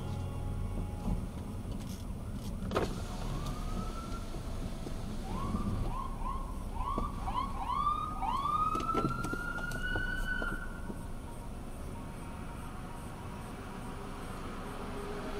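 Car running at low speed as it manoeuvres, a steady low rumble. From about three seconds in, a series of short rising whines comes about twice a second, ending in one longer rising whine near ten seconds.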